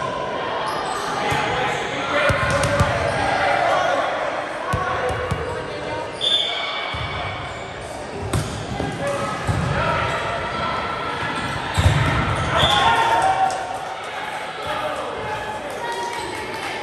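Indoor volleyball rally: the ball is struck several times, sharp smacks that echo in the large gymnasium, with players' voices calling and shouting in between.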